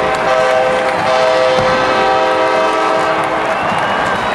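A loud, sustained chord of several horn tones, sounded in two blasts, the first short and the second held for about two and a half seconds, over crowd noise in the stadium.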